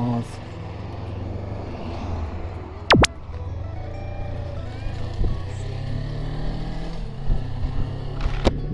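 Suzuki V-Strom 250's parallel-twin engine pulling away and running at low revs during its break-in. A single loud sharp click comes about three seconds in.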